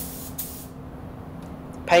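Automotive paint spray gun hissing briefly near the start, broken once, as red base coat is sprayed over the lower half of a car, over a steady low hum.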